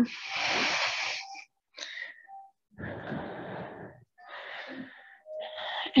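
A person breathing audibly in and out, several long breaths of about a second each, close to the microphone.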